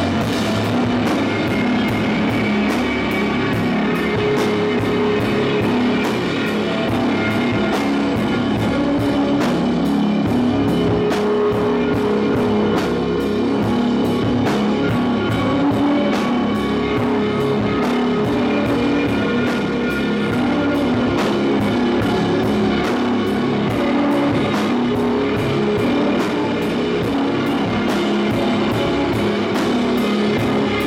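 Shoegaze rock band playing live: electric guitars over a steady drumbeat, loud and even throughout.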